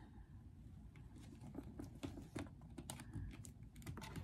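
Faint, irregular light clicks and taps of a hot glue gun and cardboard being handled on a tabletop as glue is applied.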